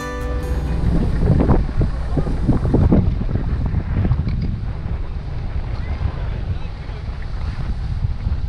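Wind rumbling on the microphone out on open water, with a few muffled voices between about one and three seconds in.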